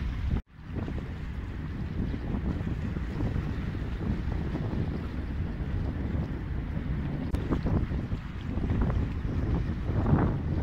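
Wind buffeting the microphone in a steady rough rumble over open sea water, with a brief dropout about half a second in.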